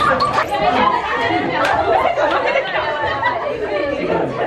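Many teenage girls' voices chattering at once, talking over one another.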